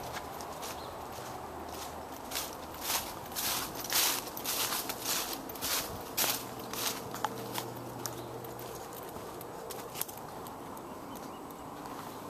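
Footsteps on a dirt path strewn with dry fallen leaves: a quick run of steps from about two seconds in to about seven seconds in, then only a few more, over a steady low hum.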